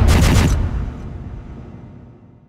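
Logo sting sound effect: a deep booming impact with a rapid crackling rush for about half a second, then a low rumble that fades away.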